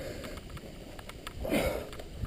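A climber's hard breath close to the microphone, one noisy exhale about one and a half seconds in, with scattered small ticks around it.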